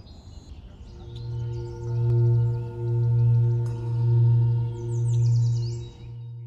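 Singing bowl sounding a deep, sustained hum that comes in about a second in and swells and fades in slow pulses roughly once a second, with fainter higher overtones ringing above it.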